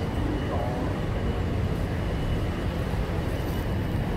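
Steady city street background noise: a low, even rumble like traffic, with faint voices of people nearby about half a second in.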